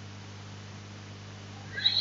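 Room tone with a steady low electrical hum and faint hiss, no distinct event; a man's voice starts a word near the end.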